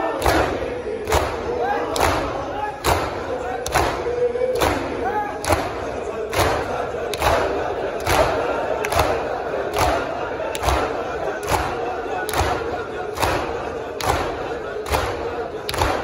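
Large crowd of mourners doing matam, beating their chests in unison with a sharp collective slap a little over once a second, in a steady rhythm. Many men's voices chant loudly over the beats.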